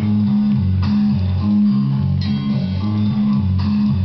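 Nylon-string classical guitar playing a riff of low notes on the bass strings, the notes changing about twice a second. Brighter struck notes cut in about a second in, a little past two seconds, and near the end.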